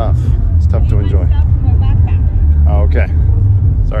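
Loud low rumble of wind buffeting a phone's microphone while walking outdoors, with short bits of people's voices about a second in and near the end.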